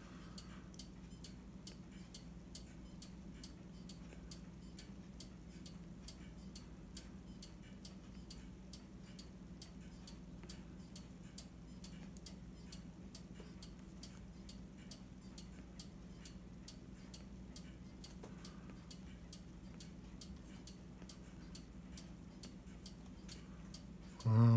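Faint, regular ticking, about three ticks a second, keeping an even pace throughout, over a low steady hum.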